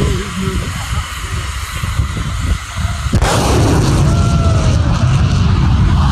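A low steady rumble with a person laughing, then about three seconds in a sudden sonic boom from a jet fighter passing over at high speed, followed by the loud roar of its engines going by.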